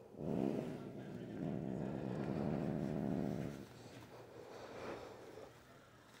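Domestic tabby cat growling from inside a clear plastic bubble muzzle: a long, low, rumbling growl lasting about three and a half seconds, then a fainter one around five seconds in. It is the warning growl of an upset cat held for a nail trim.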